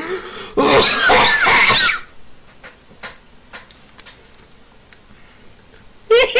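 A man's breathy, wheezing laugh, loud for over a second starting about half a second in, then a few faint clicks in a quiet stretch.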